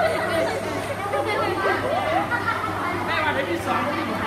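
Several young girls' voices chattering over one another, over a steady low hum.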